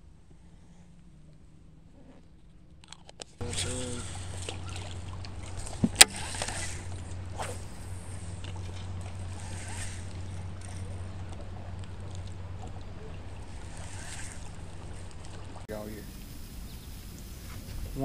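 Quiet at first, then a steady low hum with rushing, wind-like noise from out on the water, broken by one sharp click about six seconds in.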